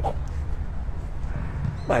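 Outdoor background noise in a pause between spoken words: a steady low rumble with a faint hiss above it, and no distinct event.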